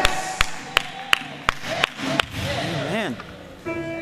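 Church band backing a preacher: a drum kit strikes sharp hits roughly every 0.4 s for the first two seconds. A voice then swoops up and down, and a held keyboard chord comes in near the end.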